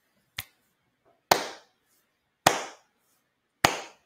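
Slow hand clapping: four claps a little over a second apart, the first one softer, each with a short ringing tail.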